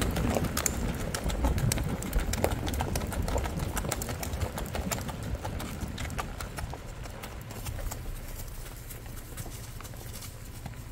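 Hoofbeats of a ridden horse on a dirt road, a quick, even run of clicks and crunches that grows fainter through the second half.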